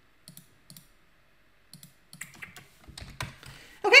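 Computer keyboard and mouse clicks while editing a spreadsheet. There are a few separate clicks in the first two seconds, then a quicker run of clicks in the second half.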